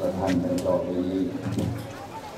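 A Buddhist monk's voice giving a sermon into a microphone, one long drawn-out phrase that ends shortly before the end.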